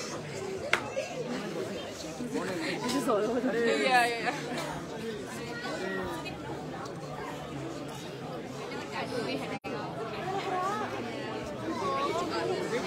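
Indistinct chatter of several people talking at once in a room, with no music playing.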